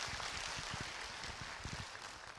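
Audience applause, a dense patter of many hands clapping, gradually fading out.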